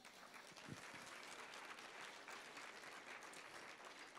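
Audience applauding, faint and steady, many hands clapping at once.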